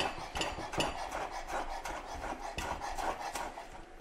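Chef's knife chopping chervil on a wooden cutting board: quick, irregular taps of the blade on the wood, about three to four a second.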